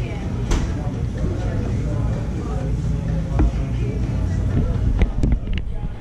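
Fast-food restaurant dining-room ambience: a steady low hum with indistinct voices of other diners, broken by a few sharp clicks and knocks. Several come close together near the end as the camera is handled.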